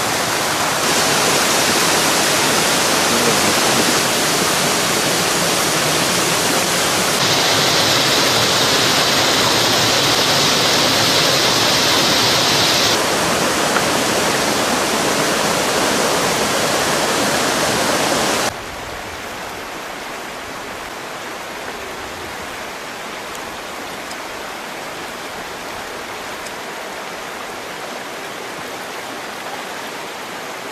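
Steady rush of a small waterfall and creek water. A little past halfway it drops suddenly to a quieter, steady stream rush.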